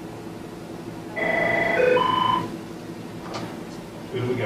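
A short run of electronic beep tones, about a second long, stepping through three steady pitches one after another, over a low steady hum.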